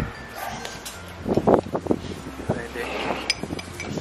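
A metal spoon clinking lightly against a drinking glass a few times near the end as thick whipped foam is spooned into it. A little over a second in, a brief run of loud yelp-like calls is the loudest sound.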